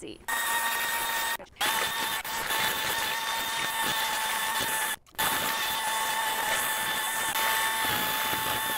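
Cordless drill running a mud-mixer paddle through wet sand-and-Portland-cement mix in a plastic bucket: a steady motor whine over the churning of the mix. It stops briefly twice, about a second and a half in and again about five seconds in.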